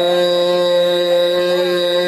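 Harmonium holding a sustained chord, its reed tones steady and unchanging, with only a faint ornament over the top.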